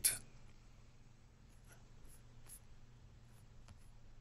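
A few faint, scattered clicks and ticks of a computer mouse as its wheel scrolls a web page down, over quiet room tone.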